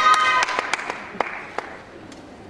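Audience applause and clapping, thinning to a few scattered claps and dying away over about a second and a half.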